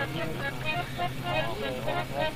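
A lull in the music: brief, broken voices or soft instrument phrases over a steady low hum.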